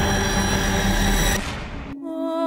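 Tense dramatic background score with a dense, low, droning texture, fading out over the last half second.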